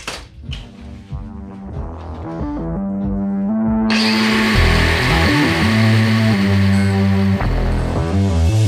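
Rock music plays throughout, building up. About four seconds in, a steady loud hiss sets in under it: a Milwaukee cordless angle grinder's cutoff wheel biting into steel tube, throwing sparks.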